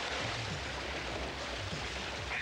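Water splashing and churning as a person thrashes about in a shallow garden pond.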